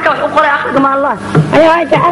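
A woman singing in Somali, her voice gliding between long held notes, over a steady low hum.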